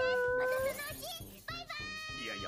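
Anime dialogue over background music with a steady beat: one character's long, drawn-out call ends about two-thirds of a second in. A second, higher voice calls out near the end.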